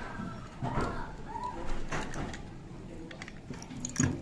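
A few light metal clicks and knocks as a blind rivet is fitted into a hand riveter, with a faint short pitched call in the background, like a bird's.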